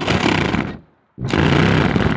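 Reciprocating saw cutting painted wooden siding, run in two short bursts of under a second each with a brief pause between.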